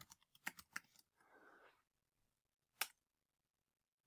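A few isolated computer keystrokes against near silence: three light clicks in the first second and one sharper click about three seconds in.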